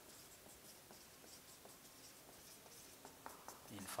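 Faint strokes of a marker pen writing on a whiteboard, a scattering of soft short scratches.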